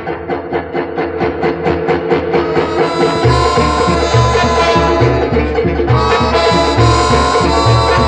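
Latin-style big-band orchestra playing an instrumental number. For about the first three seconds the bass drops out under a run of quick, even strokes, about five a second. Then the bass and full band come back in and play on.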